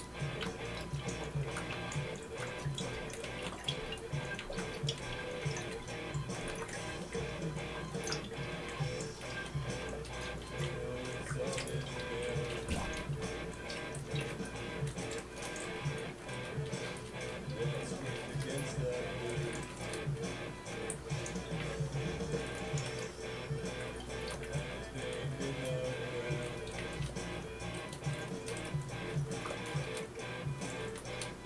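A person gulping liquid from a glass bottle in one long unbroken chug, swallowing and glugging steadily, over background music.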